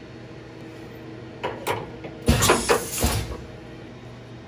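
A steel tool holder handled in a tool-holder rack: a few light metallic clicks, then a louder rough sliding clatter lasting about a second, over a steady low hum of shop machinery.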